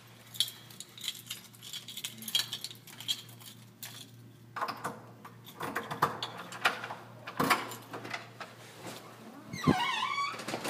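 Jangling, clicking handling noise of someone walking with a backpack, irregular and growing busier about halfway through, over a steady low hum. A short falling squeak comes near the end.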